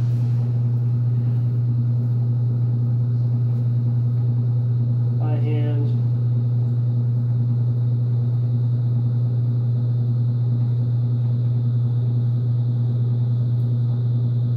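Steady low electric-motor hum, one unchanging pitch throughout, from the belt-driven poultry-processing machine running in the barn.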